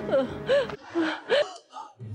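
A woman crying out in high, rising-and-falling sobbing wails, then short gasping sobs. A held background music note stops about three-quarters of a second in.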